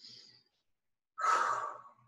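A woman breathing: a faint short breath at the start, then about a second in, an audible sigh-like exhale lasting under a second.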